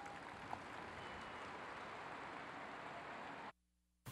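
Faint, steady hiss of open-air stadium ambience picked up by the podium microphone, with no voices, cutting off to dead silence about three and a half seconds in.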